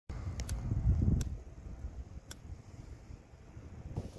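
Low rumbling wind noise on the microphone, loudest in the first second and a half, with four short sharp clicks scattered through it.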